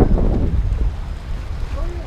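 Wind buffeting the microphone in a steady low rumble, with small waves washing against shoreline rocks.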